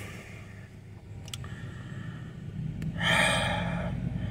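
A man's breath, a long sigh or drawn breath, about three seconds in. Under it runs the low, steady rumble of a truck engine, which grows louder in the second half.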